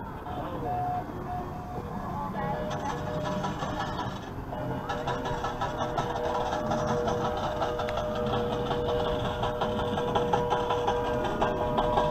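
Outdoor ambience of music and voices. From about two and a half seconds in, a steady pair of held tones runs under it.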